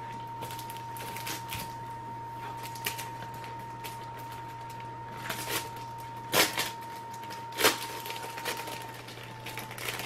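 Computer mouse clicking: a scatter of light clicks, with two louder clicks a little past the middle, over a steady faint whine and low hum.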